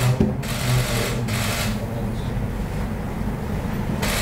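Press camera shutters firing in rapid bursts, two short runs of fast clicking in the first two seconds, over a low steady room hum.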